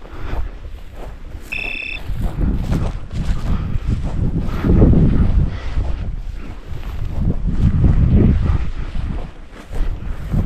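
Wind buffeting the microphone in gusts, with a low rumble that swells and fades. A brief high-pitched tone sounds once, about one and a half seconds in.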